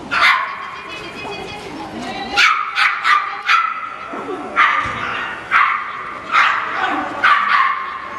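A dog barking repeatedly: about nine sharp, high barks in uneven bunches.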